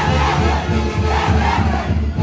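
A group of dancers giving high-pitched whooping shouts in two bursts, near the start and about a second in, over Andean Santiago festival music with a steady bass-drum beat.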